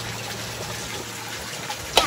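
Steady water noise, an even hiss with no break, and a sharp click at the very end.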